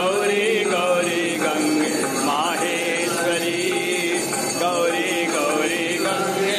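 Voices singing a Hindu devotional chant together, with a continuous wavering melody and no pauses.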